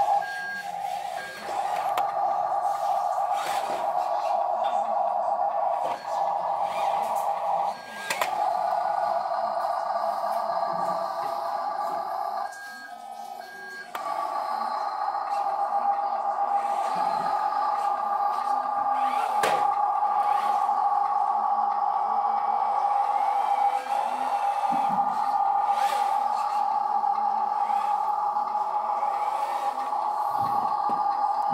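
Radio-controlled dump truck running and pulling two trailers, giving a steady high buzzing whine. The whine cuts out briefly a few times, once for over a second near the middle.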